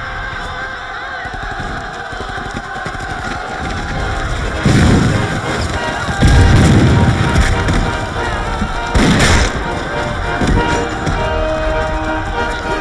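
Dramatic film score with held tones, over battle sound effects of gunfire and three loud explosions, about five, six and a half and nine seconds in.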